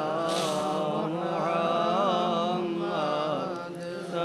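Melodic chanting of the Arabic blessing on the Prophet, "sallallahu alaihi wa sallam", drawn out in long wavering notes, easing off slightly near the end.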